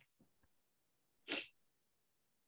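A single short, sharp puff of breath noise from a person about a second and a half in, preceded by a few faint clicks.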